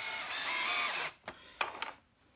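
Power drill driving a screw through a caster's steel mounting plate into the plastic stand. The drill runs for about a second and stops, followed by a few light clicks.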